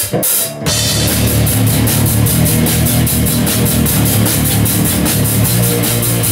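A rock band in rehearsal, with electric guitar, bass guitar and drum kit, comes in together less than a second in, after a single sharp click. They play a loud, fast heavy metal song with rapid, even drumming.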